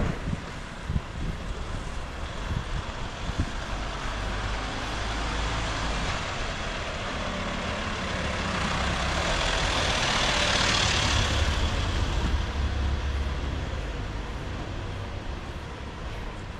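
A van driving slowly past on a wet brick street: engine rumble and tyre hiss build, are loudest about ten to eleven seconds in as it passes close by, then fade away.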